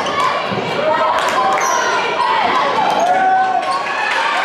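Basketball game in a gym: a ball bouncing on the hardwood floor in scattered sharp thuds that ring in the hall, with players and spectators shouting over it.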